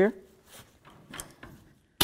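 Pliers working a cotter pin out of the castle nut on a tie rod end: a few faint, scattered metal clicks and scrapes.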